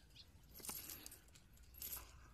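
Loose gravel stones clinking faintly as a golden retriever steps and noses through them, in two short clusters: about two thirds of a second in and again near the end.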